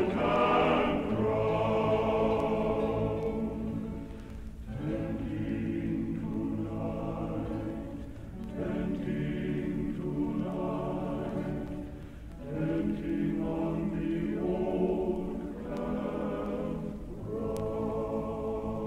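Choir singing a slow passage from a medley of American Civil War songs, in long held chords with a brief breath-like dip about every four seconds.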